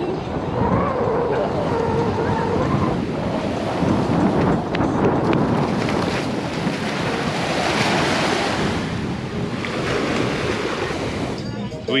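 Surf washing onto a sandy beach, with wind rushing over the microphone.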